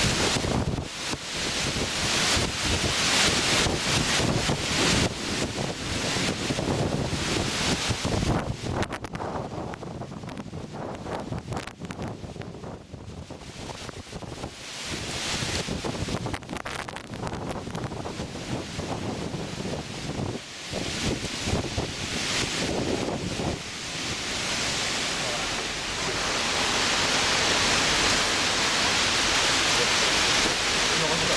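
Gale-force storm wind gusting hard over the microphone, with rough lake waves washing against the shore. The gusts ease somewhat a few seconds in and build back to a steady, louder rush near the end.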